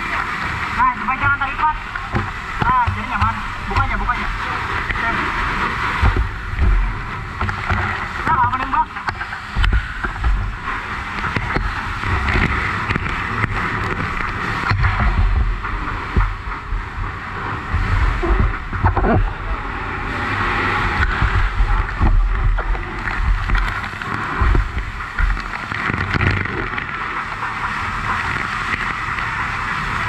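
Fire hose water jet spraying with a steady hiss, mixed with indistinct shouting voices and irregular low rumbling knocks.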